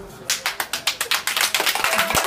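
A group of people clapping their hands quickly and rhythmically. The clapping starts about a quarter of a second in.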